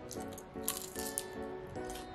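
Crunching bites and chewing of a McDonald's apple pie's crust, still crisp though cold, in short irregular crackles over soft background music.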